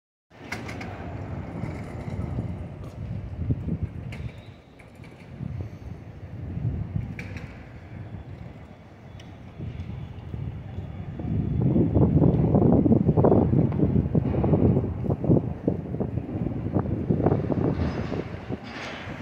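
City street ambience with traffic: a steady low rumble of vehicles and street noise that swells louder and rougher about eleven seconds in.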